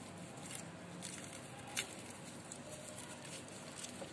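Faint handling sounds of hands rolling a filled paratha on a glass plate: soft rustles and light taps, with one sharper click a little under two seconds in.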